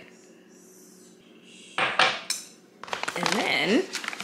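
A short clatter of hard items knocking together about two seconds in, as gift items are lifted and set down in a wicker basket.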